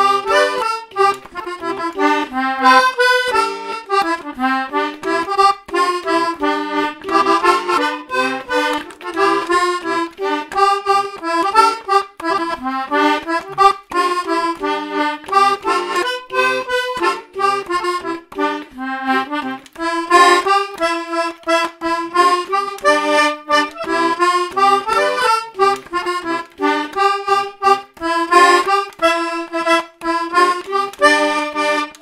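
Hohner Kids mini button accordion playing a traditional waltz tune, a melody over a repeating lower accompaniment as the small bellows are pushed and pulled.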